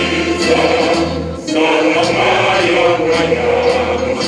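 A large choir of mixed voices singing a song together with musical accompaniment, with a short break between phrases about one and a half seconds in.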